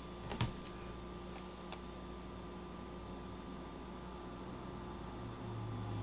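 Quiet room tone with a steady low electrical hum, and a few faint clicks in the first two seconds.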